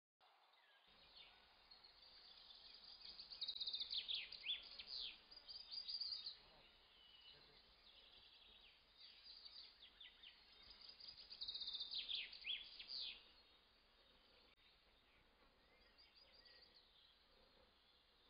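Birds chirping faintly: short, high, falling chirps in two spells, a few seconds in and again near the middle, over a low hiss.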